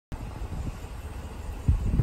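Low rumble of wind buffeting the microphone outdoors, surging louder near the end.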